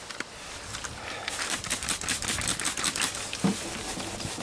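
Wet 1000-grit sandpaper on a hand block scrubbing back and forth over the painted steel body panel of a 1983 VW Westfalia: a fast run of short, scratchy strokes that starts about a second in.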